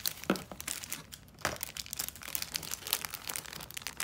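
Plastic wrapping crinkling and crackling as it is handled in the fingers, with a couple of sharper crackles about a third of a second and a second and a half in.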